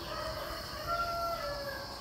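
A rooster crowing once: a single long call lasting most of two seconds, loudest about a second in, over a steady high insect drone.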